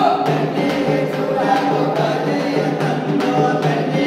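A song sung by a group of voices together.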